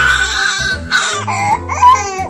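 A baby crying: one held wail of about a second, then a second cry that rises and falls in pitch, with music playing underneath.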